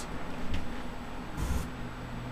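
A steady low hum under a faint hiss, with one brief thump and a short burst of hiss about one and a half seconds in.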